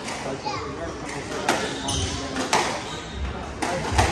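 Squash rally: a squash ball struck by rackets and hitting the court walls, sharp cracks roughly once a second from about a third of the way in, over spectators talking.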